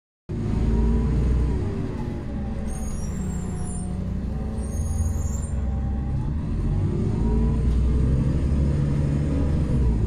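Solaris Urbino 12 III CNG city bus's Iveco Cursor 8 natural-gas straight-six, heard from inside the cabin while the bus is under way. The engine note climbs and then drops twice, as the Voith automatic gearbox shifts up. Two brief high whistling tones come in the middle.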